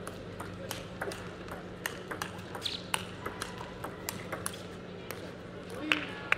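Table tennis rally: the ball clicks sharply and irregularly off the bats and the table, over a steady low hum in the hall.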